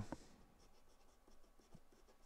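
Pen writing on paper: faint, short scratching strokes as a brace and a word are written.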